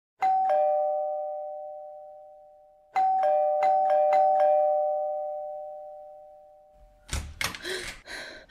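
Two-tone doorbell chime: one ding-dong, then from about three seconds in a rapid string of repeated rings from the button being pressed again and again, the notes ringing down slowly. A few sharp thumps follow near the end.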